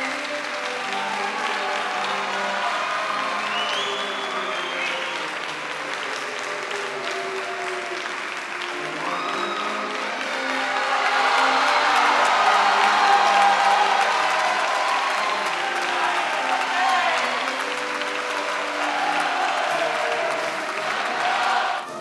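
Audience applause in a concert hall, swelling louder about ten seconds in, with music playing underneath it.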